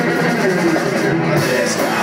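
A rock band playing live through amplifiers: electric guitars and a drum kit, continuous and steady in level.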